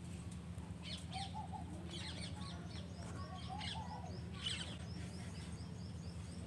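Faint birds chirping: scattered short high calls, with a quick run of rapid repeated notes in the middle, over a steady low hum.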